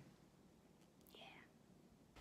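Near silence: room tone, with one softly breathed, near-whispered word about a second in.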